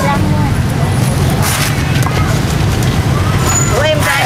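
Steady low rumble of street traffic. A few faint knocks from a cleaver on a wooden chopping block come about a second and a half in.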